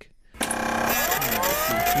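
A sound effect like a machine starting up: after a brief silence, a sudden burst of noise, then a whine rising in pitch.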